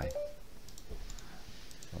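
A few quick computer mouse clicks, coming in close pairs about a second in and again near the end, as buttons and menus are clicked in software.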